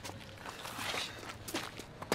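Faint footsteps on pavement, a few scattered steps.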